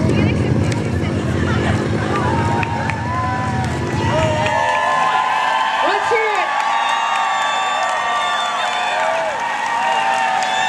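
A chainsaw engine idling with a fast, steady low putter that stops about four and a half seconds in. A crowd cheers and whoops over its last moments and on after it.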